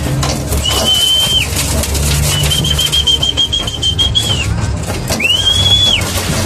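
Three high whistle calls, each rising quickly to a steady pitch and then cut off, the middle one longer and warbling: a keeper's call whistle bringing homing pigeons in to the loft.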